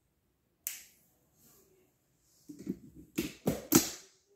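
A single sharp click about a second in, like a marker cap being snapped, then a run of knocks and rubbing close to the microphone near the end, the loudest three in quick succession: hands handling the marker and bumping the desk and phone.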